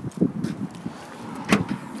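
Irregular low rumbling and knocking of handling noise, with a single sharp click about one and a half seconds in as the Corsa's tailgate latch is released.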